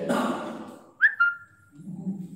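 Chalk squeaking on a blackboard while writing: a sudden high-pitched squeal about halfway through that jumps up in pitch, then holds one note for just over half a second and fades.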